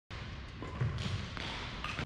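A few faint taps and thuds, the loudest just under a second in, from a badminton net drill: shuttlecocks hit softly with a racket at the net.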